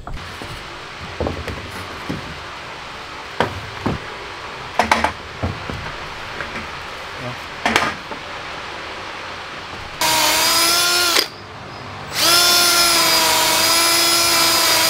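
A few scattered knocks of wood and tools, then a cordless drill runs twice at a steady pitch, about a second and then about three seconds, drilling into a heavy timber.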